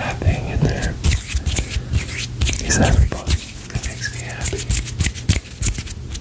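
Close-microphone ASMR hand sounds: fingers and palms moving and rubbing right by the microphone, with many quick sharp clicks, under soft whispering.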